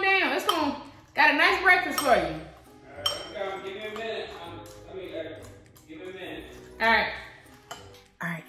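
Metal spoon stirring cereal and clinking against a ceramic bowl. A woman's wordless voice is heard during the first two seconds and again briefly near the end.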